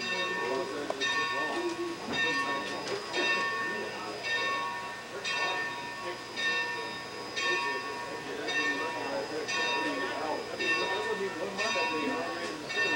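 Locomotive bell on 2-8-2 steam locomotive No. 30 ringing steadily, about one stroke a second.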